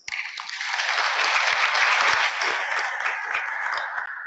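Audience applauding after a speech, building over the first second and easing off near the end.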